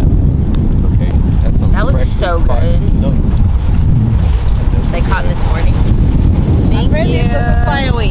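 Wind buffeting the microphone, a steady loud low rumble, with brief bits of voices in the background.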